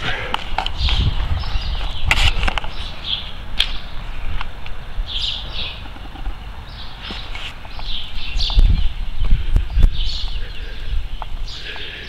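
Outdoor handheld ambience: low, uneven wind rumble on the microphone with scattered footsteps and knocks, and short bird chirps now and then.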